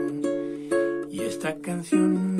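Nylon-string classical guitar being strummed and picked as song accompaniment, several chords and single notes that change pitch toward the end.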